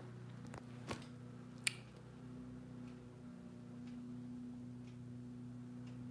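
Faint steady low hum of an unidentified background noise, with two light clicks about one and two seconds in.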